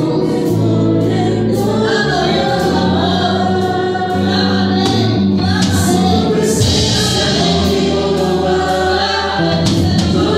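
Live gospel worship band playing: a woman singing into a microphone over electric bass and a drum kit with cymbals. The bass holds long low notes, changing note about two seconds in.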